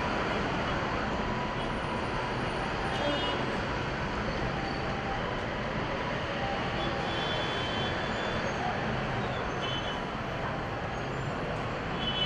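Steady city background roar of distant traffic and engines, with a few faint short high-pitched tones scattered through it.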